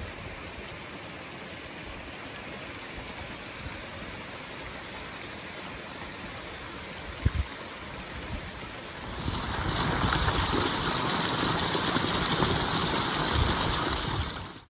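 A small mountain creek cascading over rock steps in little waterfalls, giving a steady rush of water that becomes louder about nine seconds in. A brief low thump comes about seven seconds in.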